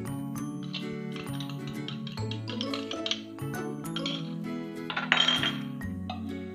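Background music with sustained notes, over a metal spoon clinking and scraping against glass bowls; the loudest clatter comes about five seconds in.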